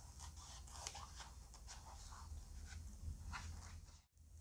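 Scissors cutting through a sheet of EVA craft foam: faint, irregular snips and crunches, over a low background hum.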